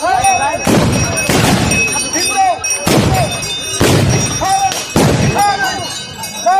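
A volley of gunshots from long guns, about five sharp reports at irregular spacing, amid men's short rising-and-falling shouts.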